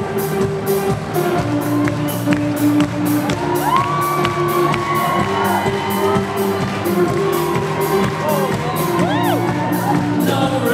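Live band playing an instrumental passage with a steady beat and long held notes, heard from within the audience. The crowd cheers and whoops over it, with rising and falling whoops about halfway through and again near the end.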